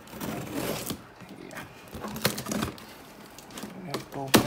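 Cardboard box's tape seal being cut and peeled open along the lid seam by hand: rustling and scraping of cardboard and tape in the first second, then a few sharp ticks and scrapes.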